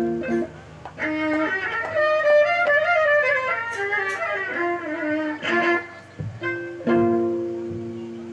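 Live instrumental music of a Lombok rudat ensemble: a winding melody on a string instrument over held notes. The music dies away near the end.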